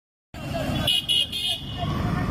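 A group of motorcycles running at low speed in a procession, with three short high-pitched toots about a second in.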